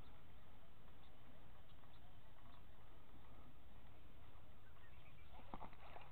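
Quiet, steady outdoor background noise over open water, with a few faint ticks and knocks near the end.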